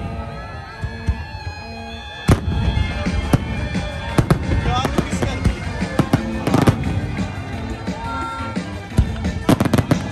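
Aerial firework shells bursting overhead: a string of sharp bangs and crackles, coming thickest in the middle and in a rapid cluster near the end, with music playing underneath.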